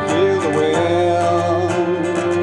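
Live acoustic guitar and keyboard playing together, with a held melody line that wavers slightly in pitch from just after the start.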